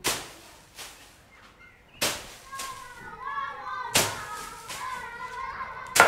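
Wooden flail beating straw on a barn floor, threshing grain by hand: sharp thuds about every two seconds, with a lighter one a second in. Faint voices are heard between the strikes.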